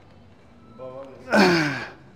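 A weightlifter's effortful grunting exhale while pressing a rep on a seated chest press machine. A short voiced breath comes just before a second in, then a loud strained exhale whose pitch falls.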